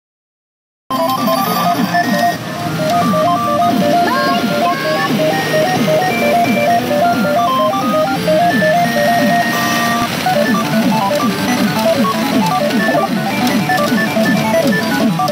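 Umi Monogatari 3R2 pachinko machine playing its electronic jingle music at the end of a jackpot round, a bright stepping melody over many short falling chirps. The sound starts suddenly about a second in.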